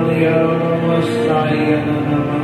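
A man's voice in a slow, wordless, chant-like song over sustained chords from a Yamaha electronic keyboard.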